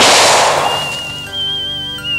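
A single gunshot that trails off over about half a second, over background music of sustained chords with a high, wavering whistle-like tone.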